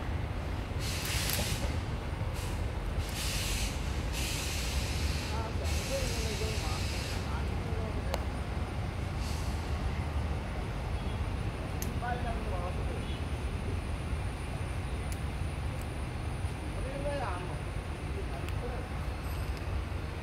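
Outdoor ambience: a steady low rumble, several short bursts of hiss in the first seven seconds, and faint distant voices.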